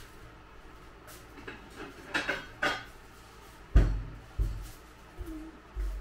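Dishes being shifted about in a kitchen cupboard to get out a large glass bowl: a few light clinks, then a heavy thump a little past halfway and more knocks near the end.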